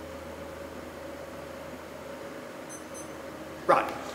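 Quiet room tone with a steady low hum and a faint steady tone, no distinct events; a man says a single word near the end.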